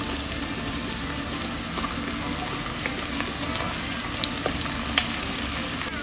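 Sliced garlic, ginger and curry leaves sizzling steadily in hot oil in a pan as they are stirred with a spatula, with a few faint clicks.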